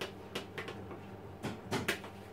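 A knife scraping and tapping inside a plastic margarine tub as margarine is scooped out into a food processor bowl: about half a dozen short clicks and scrapes.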